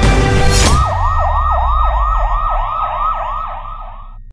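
Music ending on a hit, then a siren wailing in quick repeated sweeps, about three a second, fading toward the end.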